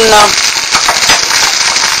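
Spaghetti and sauce sizzling in a hot frying pan, with rapid crackling and spattering pops as the pasta cooks in the octopus sauce.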